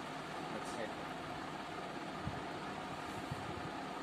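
Steady background hiss with no distinct events: even room or line noise during a pause in talking.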